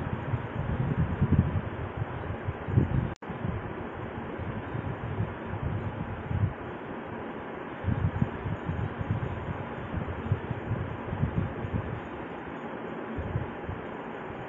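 Steady background hiss with irregular low rumbling, the signal dropping out for an instant about three seconds in.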